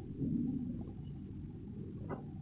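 Faint, steady low-pitched room hum and background noise, with no speech.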